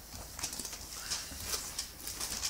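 Bible pages being leafed through: a few soft, irregular rustles and light paper clicks.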